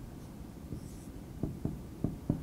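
Dry-erase marker writing on a whiteboard: faint strokes with a few light taps of the marker tip, mostly in the second half.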